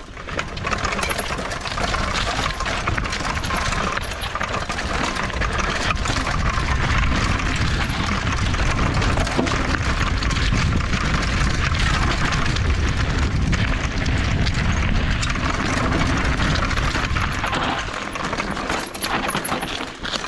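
Mountain bike descending a rocky dirt trail: tyres crunching over loose stones and the bike rattling in a dense, continuous run of knocks, over a steady low rush of noise.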